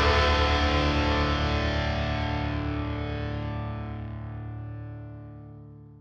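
The last chord of a punk rock song: a distorted electric guitar chord left ringing, fading steadily away to silence.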